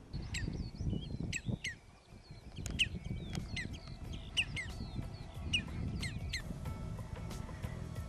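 Wild birds calling: many short, sharp, high calls sliding down in pitch, several a second in clusters, over a low rumble. Soft music tones come in near the end.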